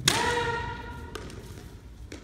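A sharp strike in a naginata bout, followed by a ringing tone of several pitches that lasts about a second and stops with a second, lighter knock.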